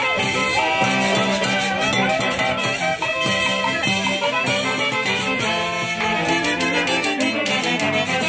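Andean folk orchestra playing a lively dance tune, with brass and clarinet melody over a steady percussion beat.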